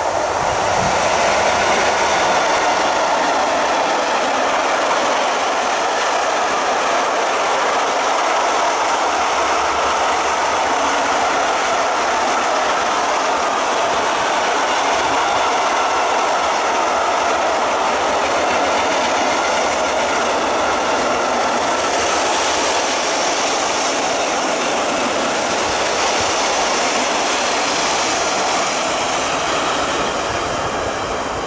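Long freight train of fuel tank wagons rolling past at speed: a steady, loud rushing of steel wheels on rail.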